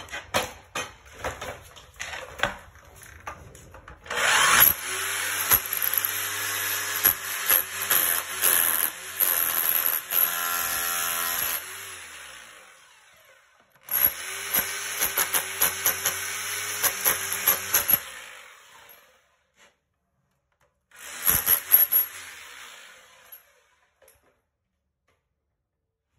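A power tool with a bit works into the concrete around a toilet drain pipe, running with a steady motor whine and rapid knocking. It runs in three goes: a long run starting about four seconds in, another from about fourteen to eighteen seconds, and a short one near the end. Scattered tapping and scraping come before the first run.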